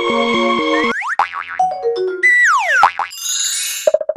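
Electronic background music with a repeating synth pattern stops about a second in. A short logo jingle follows, made of quick sliding pitch glides that swoop up and down and end in a bright, shimmering high chime.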